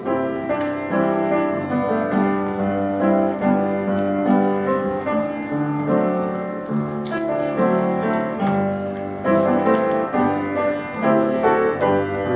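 Piano music: a slow piece of held chords and melody notes, playing continuously.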